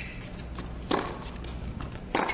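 A tennis ball struck by a racket during a baseline rally: one sharp hit about a second in.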